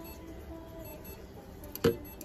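Low room background, then a single sharp knock just before the end.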